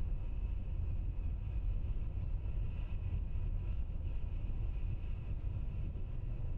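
Steady low rumble from the Falcon 9 first stage's nine Merlin 1D engines still burning just before main engine cutoff, with a faint high whine above it.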